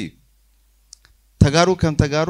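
A man speaking into a handheld microphone. His phrase trails off, there is a pause of about a second with one faint click in it, and then he goes on speaking.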